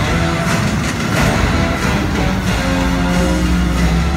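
Music playing loudly and steadily, dense and full, with held low notes that shift every second or so.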